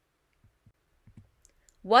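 Near silence with a few faint, short clicks, then a voice starts speaking near the end.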